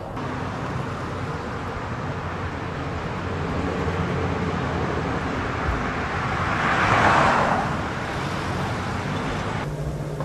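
Steady road traffic noise, with one vehicle passing that grows loudest about seven seconds in and then fades.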